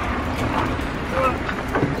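Open safari jeep running with wind buffeting the microphone, a steady rushing noise over a low rumble, with brief snatches of voices.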